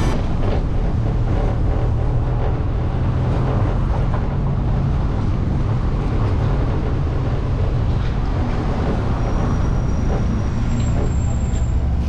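Vehicle driving along a city street: a steady low rumble of engine and road noise, with surrounding traffic noise.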